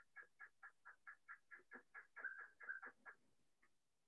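A bird calling: a faint, rapid series of short chirps, about four or five a second, that stops about three seconds in.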